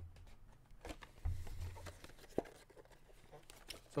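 Faint handling sounds of cardboard boxes and items being moved on a desk: light rustles and knocks, a dull bump about a second in, and one sharp click past the middle.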